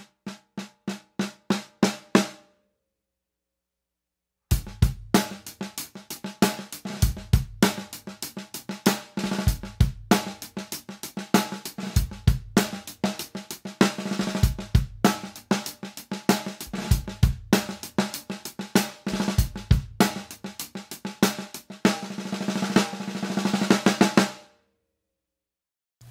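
Steel snare drum fitted with PureSound Concert 16 snare wires, 16 strands of stainless steel: a quick run of single strokes getting louder, then after a short pause a drum-kit groove of snare and bass drum lasting about twenty seconds. The wires are tensioned just below the point where they start to choke, which gives a controlled snare sound.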